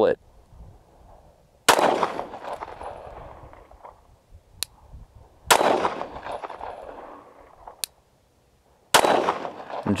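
Glock 19 Gen 3 9mm pistol firing three single aimed shots, several seconds apart, each followed by a long fading echo. Two faint sharp clicks fall between the later shots.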